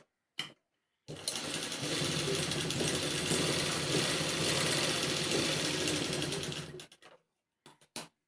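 Black sewing machine running steadily for about six seconds as it stitches one line of a diamond grid across fabric. It starts about a second in and stops near the end, with a few short clicks just before and after.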